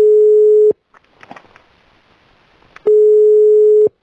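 Telephone ringback tone: a steady single tone rings for about a second, twice, with faint line hiss and a few clicks in between. It is the sound of a call ringing out unanswered.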